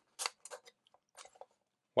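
The metal wire kickstand of a Venlab VM-200M digital multimeter being pried out of its plastic back: several short clicks and scrapes in the first second and a half.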